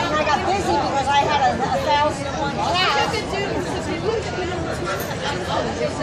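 Indistinct chatter of several people talking at once, with a general crowd babble behind it.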